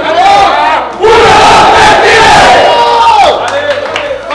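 A football team in a huddle shouting together as one: a short shout, then one long, loud team yell held for about two seconds that trails off near the end.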